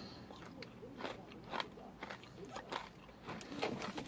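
Chewing a Daim bar: the hard almond-caramel centre cracks between the teeth in scattered, crisp crunches.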